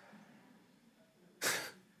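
Quiet room tone, then about a second and a half in, one short sharp breath close to a headset microphone, a brief rush of air with no voice in it.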